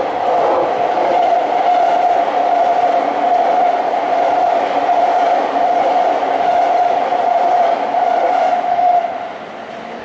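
Tokyo Waterfront Area Rapid Transit 70-000 series electric train running past, a steady high whine over the wheel-on-rail noise. It fades about nine seconds in as the last car goes by.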